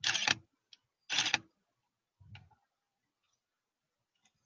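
Nikon DSLR shutter firing twice, about a second apart, while stop-motion frames are shot, followed by a softer low knock a second later.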